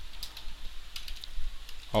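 Typing on a computer keyboard: a run of light, irregular key clicks.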